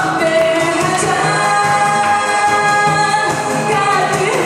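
A woman singing into a microphone over musical accompaniment, holding long notes.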